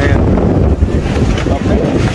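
Loud, steady low wind rumble on the microphone aboard a moving boat, with the boat's engine and water beneath it.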